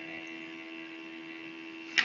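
Steady electrical hum and hiss from an open microphone channel, with a few constant tones, ending in a sharp click.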